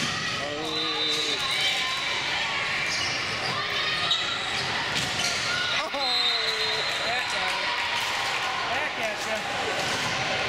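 Indoor volleyball rally: sharp slaps of hands and arms on the ball, and shoes squeaking on the court floor, with players calling out. A louder call rings out about six seconds in.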